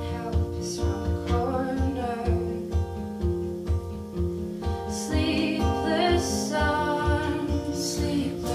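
A live folk-pop band playing, with electric guitar and keyboard over a steady low pulse, and singing.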